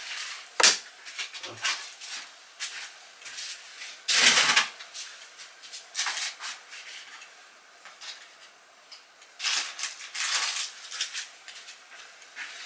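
Bacon strips frying in a pan, the fat crackling and spitting in irregular pops, with a louder burst about four seconds in.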